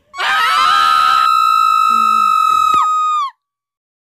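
A loud, high-pitched scream that starts ragged and then holds one steady pitch for about three seconds. Its pitch drops just before it cuts off suddenly.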